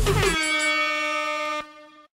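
Air horn sound effect: one held tone that dips slightly in pitch as it starts and breaks off after about a second and a half, as the dance track's beat stops. It marks the end of a Tabata work interval.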